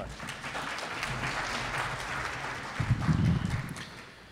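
Audience applauding, fading out near the end, with a burst of low thudding about three seconds in.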